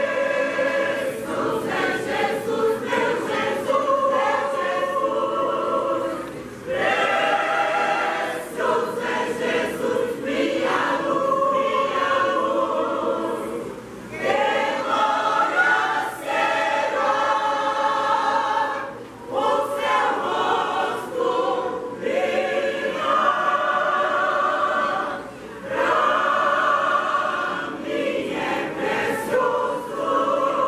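Mixed church choir of women's and men's voices singing a Portuguese-language gospel hymn, in phrases with brief pauses for breath between them.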